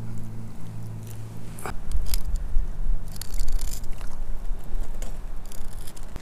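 A knife cutting into a freshly caught rainbow trout to take off the head and gut it: a series of short, irregular cuts with crunches.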